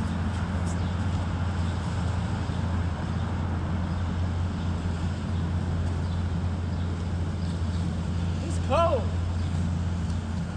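A steady low hum of a running vehicle engine on a city street. Near the end comes a short vocal sound that rises and then falls.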